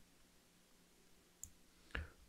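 Two computer mouse clicks about half a second apart near the end, over near-silent room tone with a faint steady hum.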